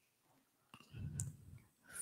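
Faint breath and small mouth clicks close to a handheld microphone, between spoken lines, starting about a second in.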